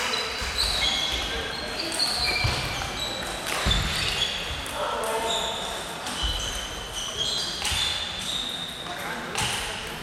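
Table tennis balls clicking off bats and tables at several tables at once in a large sports hall, over background chatter from the players.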